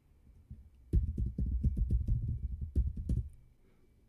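Computer keyboard being typed on: a quick run of keystrokes entering an SSH login password. The typing starts about a second in and stops after about two seconds.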